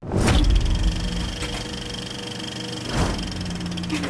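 Logo intro sting: a sudden whoosh, then a steady held electronic drone with a high tone over a low hum, and a second whoosh about three seconds in.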